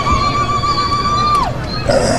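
Ululation (vigelegele): one long, high, rapidly trilling note that falls away about one and a half seconds in, over crowd noise.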